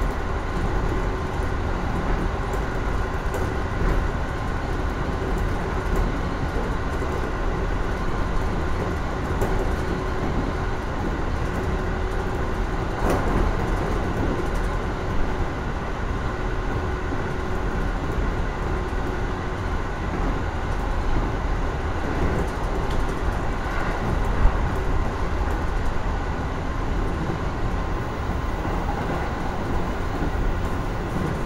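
JR East 415 series electric train running steadily at speed, heard from inside its front cab car: continuous wheel-on-rail running noise with a faint steady whine and a few brief knocks.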